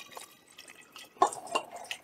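Water poured from a plastic pitcher through a stainless steel funnel into a glass gallon jug, trickling and splashing unevenly as it rinses honey from the funnel.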